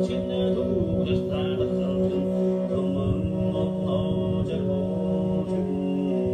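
Mongolian throat singing: a steady low sung drone with a higher overtone melody shifting above it, and a plucked string instrument accompanying.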